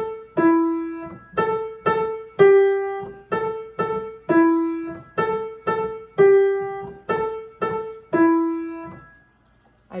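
Piano playing a simple beginner melody of single notes, about two a second, alternating between a few neighbouring pitches (the left hand's G and E and the right hand's A), each note left to ring and fade. The playing stops about nine seconds in.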